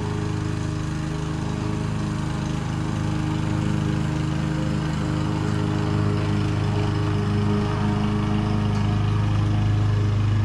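Gas push mower engine running steadily while mowing, an even hum that grows slightly louder toward the end.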